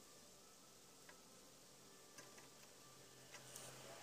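Near silence: a few faint ticks as a screwdriver tip touches a motherboard's front-panel power-switch pins, then a faint low hum from about two and a half seconds in as the test PC starts up.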